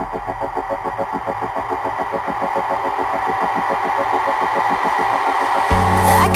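Electro house build-up: a fast, even synth pulse and a rising noise sweep grow steadily louder, then heavy bass and the full beat drop in just before the end.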